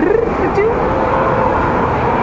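A baby's voice making a wordless sound that rises at first, then rises again and is held for over a second, over the steady hubbub of a busy shop.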